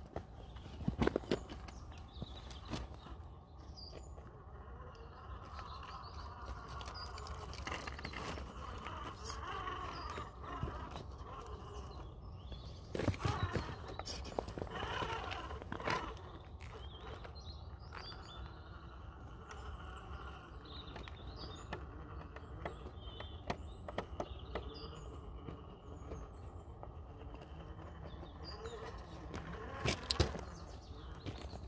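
RC rock crawler clambering over rock: its tyres, wheels and chassis knocking, tapping and scraping on the stone, with a louder cluster of knocks about halfway through. The Hobbywing Fusion motor adds little noise of its own.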